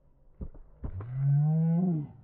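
Two thuds of feet landing on concrete after a jump, then a man's long, low drawn-out "ohhh" lasting about a second and rising slightly in pitch.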